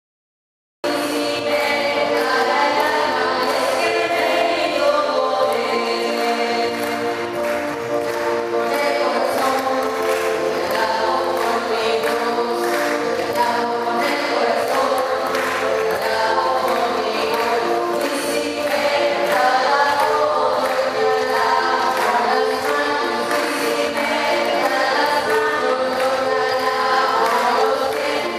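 A choir or congregation singing a hymn together with instrumental accompaniment, starting abruptly about a second in.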